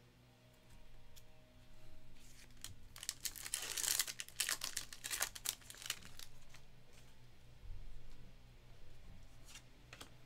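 Foil wrapper of a Panini Donruss basketball card pack being torn open and crinkled, a dense crackling burst from about two to six seconds in, then a few faint ticks as the cards are handled.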